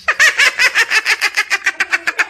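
A comic cackling sound effect: a rapid, even run of short pitched calls, about nine a second, quickening slightly toward the end.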